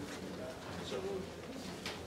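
Faint, low murmured voices over room noise, with no clear words.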